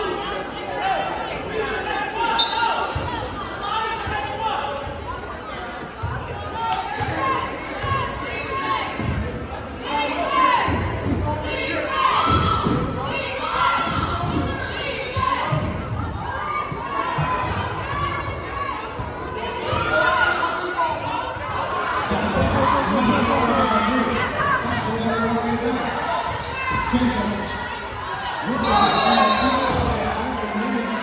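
A basketball bouncing on a hardwood gym floor during live play, with spectators and players talking and calling out throughout, all echoing in a large gym.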